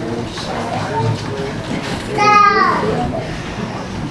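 Indistinct talking among a gathering, with a young child's high-pitched vocal cry, rising then falling, about two seconds in.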